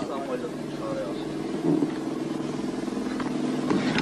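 A vehicle engine running steadily, a low even hum that grows slightly louder, with faint voices in the first second.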